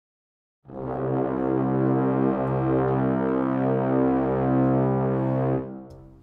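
Sampled orchestral brass from a Spitfire Audio Albion library holding one long 'bwah' of two Cs an octave apart, coming in just under a second in and dying away near the end. Faint clicks from someone packing up a guitar case, caught in the library's recording, sit behind it.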